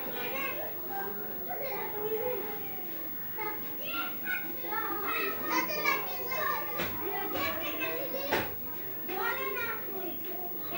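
High-pitched voices talking and chattering, like children's, with two sharp clicks in the second half.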